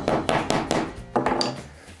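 Upholstery hammer driving a small tack at a slant into the plywood back of a shell chair, several light taps in quick succession that die away near the end.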